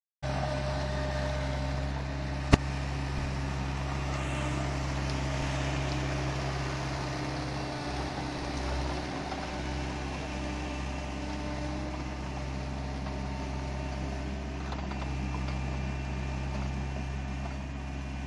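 Protech P22 tracked post knocker's engine running steadily as the loaded machine drives along on its tracks. A single sharp click cuts through about two and a half seconds in.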